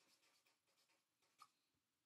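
Near silence, with faint strokes of a felt-tip marker writing a word on paper and one soft tick about one and a half seconds in.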